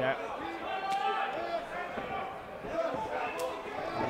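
Scattered voices shouting across an arena hall, with two short sharp knocks about a second in and near the end.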